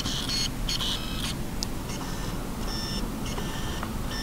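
Autofocus motor of a Rokinon 50mm f/1.4 AF lens, picked up by a lavalier microphone placed on the lens, buzzing in a series of short, high-pitched bursts as it drives focus. Its autofocus is noisy.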